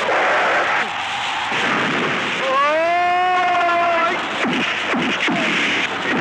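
Heavy rain falling steadily, with a long shouted cry that rises and then holds for about a second and a half partway through. Near the end come several heavy punch sound effects, a few thuds in quick succession.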